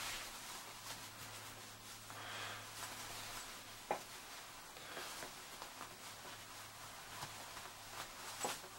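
Faint rustling and scratching of jacket fabric and a power cord being handled and fed through a pocket pouch, with one sharp click about four seconds in. A low steady hum sits underneath and fades near the end.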